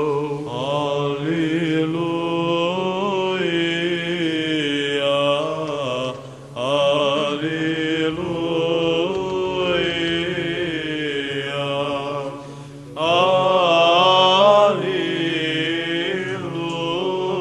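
Orthodox cathedral cantors chanting in Byzantine style: a slow, ornamented melodic line sung over a steady held drone (ison), breaking off briefly for breath about six and twelve and a half seconds in.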